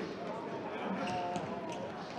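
Indoor soccer in a sports hall: a ball being kicked and bouncing on the hall floor, with players shouting to one another.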